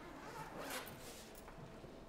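A bag's zipper pulled once, a short noisy stroke about half a second in, with the bag's fabric rustling around it.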